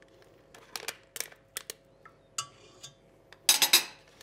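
Food packaging being handled and torn open: scattered light crinkles and clicks, then a louder crinkling burst near the end.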